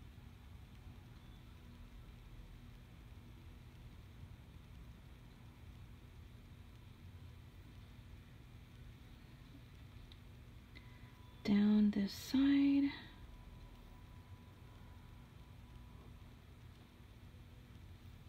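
Quiet room tone with a short two-part hum from a woman's voice about two-thirds of the way in, the second part higher in pitch.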